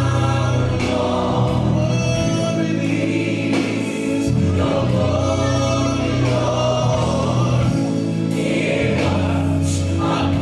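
Gospel music: a choir singing over a steady bass line.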